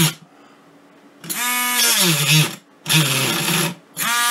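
Harbor Freight Drill Master rotary tool with a cutting disc, whining in three short bursts, its pitch sagging and dying away each time as the disc bogs down against press board. Running off its stock 12-volt, half-amp adapter, it is too weak and stalls as soon as any pressure is put on it.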